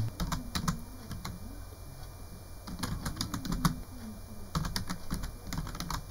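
Typing on a computer keyboard: keystrokes in short bursts with pauses between them as a search phrase is typed.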